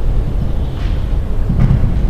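A steady low rumble with no speech over it, with a brief soft low sound about one and a half seconds in.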